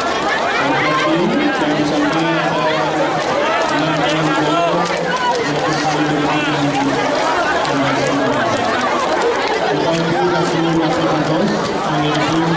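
A dense crowd shouting and chattering as people push and jostle, many voices overlapping at once. A low steady hum comes and goes underneath.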